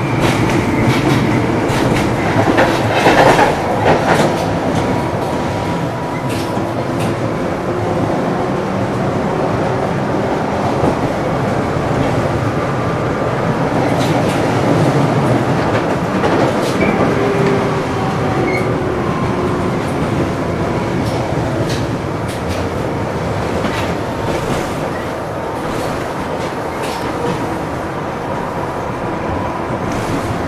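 LVS-97K articulated tram running along the track, heard from inside the car: a steady rumble of wheels on the rails, with scattered clicks and knocks that are busiest a few seconds in.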